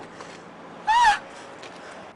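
A woman crying: one short, high-pitched sobbing wail about a second in that rises and falls.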